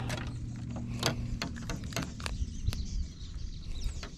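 Several light clicks and taps from hands handling fishing line and a soft-plastic jig, over a low steady hum.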